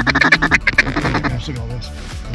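Rapid duck chatter, a fast run of short quacks, fading out about a second in, over background music.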